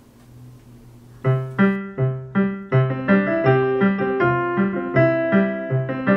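Background piano music, a steady run of evenly spaced notes, starting about a second in after a brief quiet.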